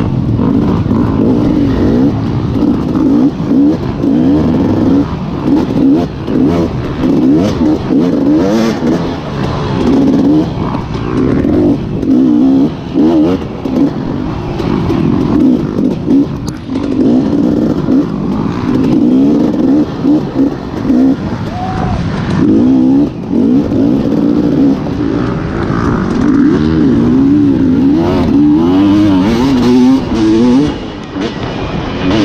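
Off-road dirt bike engine under hard riding, its pitch rising and falling again and again as the throttle is opened and shut, with brief drops in level between bursts. Heard close up from on the bike.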